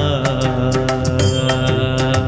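Karaoke backing track of a Tamil film song: held instrumental chords over a steady percussion beat, with several strikes a second. A sung note ends right at the start.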